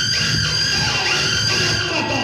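A shrill, held high-pitched sound with many overtones over the stage band's music; it fades out near the end.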